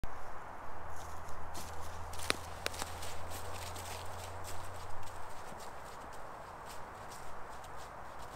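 Footsteps crunching through dry leaf litter on a woodland floor, a steady walking pace that grows fainter as the walker moves away. A couple of sharp snaps, like small twigs breaking underfoot, come about two seconds in, over a steady background hiss.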